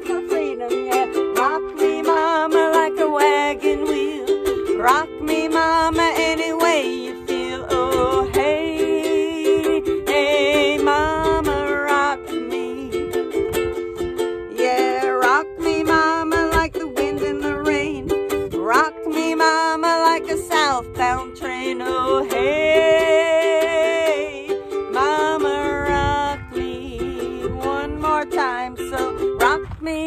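Ukulele strummed through an instrumental break between sung verses, its chords steady underneath, with a melody line above that slides and wavers in pitch.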